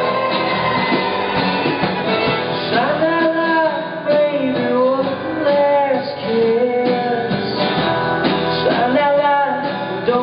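Live alt-country band with acoustic and electric guitars, bass guitar, drums and violin playing a song. A man's lead vocal comes in about three seconds in and carries on over the band.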